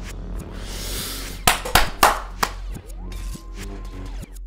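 TV soundtrack of a lightsaber fight against droids: a swelling hiss over music, then four sharp, loud strikes within about a second as the lightsaber hits the droids' metal armour.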